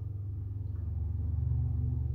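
Low sustained bass notes of background music, shifting to a slightly higher note about halfway through.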